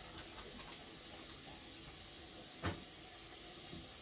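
Faint steady rush of a bathroom tap running into the sink while the face is splashed with water, with one short knock about two-thirds of the way through.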